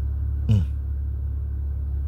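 Steady low rumble, with one short vocal sound about half a second in.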